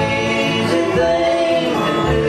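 Live bluegrass band playing a song: held sung notes over acoustic guitars, upright bass and a lap-played resonator guitar, the voices moving to a new note about a second in.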